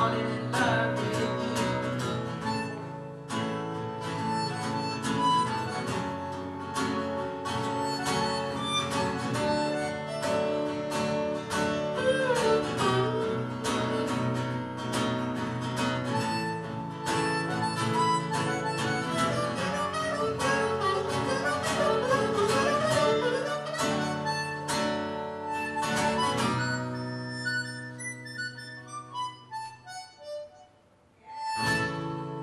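Harmonica solo, played with cupped hands, over a strummed acoustic guitar. Between about 12 and 24 seconds in, the harmonica notes bend and slide in pitch. Near the end the strumming stops and the held notes fade away.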